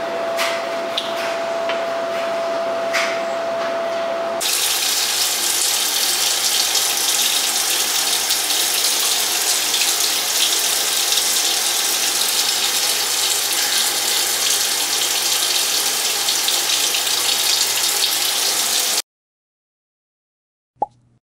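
Water running steadily in a bathroom, an even rush that cuts off suddenly near the end. In the first few seconds, before the water starts, a steady high tone sounds with a few clicks.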